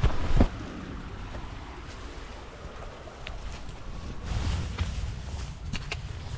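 Wind rumbling on an action camera's microphone, with a couple of thuds in the first half second and a few faint ticks after.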